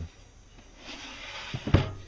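Wooden camper-kitchen drawer sliding along and then knocking shut: a short scraping slide, followed by two sharp knocks a fraction of a second apart, the second the louder.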